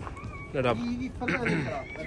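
Men's voices, with two loud, drawn-out exclamations about half a second and a second and a half in.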